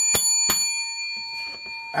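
A bright, bell-like metallic ring, set off by a few sharp clicks in the first half second. It rings on with several high tones and fades slowly.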